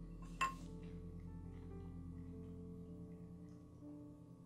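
Quiet instrumental background music with held tones. About half a second in, a metal spoon clinks once against a ceramic cereal bowl, ringing briefly.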